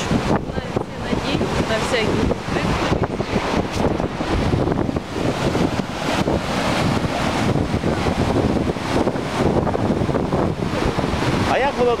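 Floodwater rushing through a breach in an earthen embankment: loud, steady churning of fast brown rapids, with wind on the microphone.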